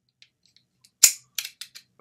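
Metal adjustable wrench being worked by hand: one sharp metallic click about a second in, followed by three lighter clicks. The jaw adjustment is stiff, not quite as loose as it should be.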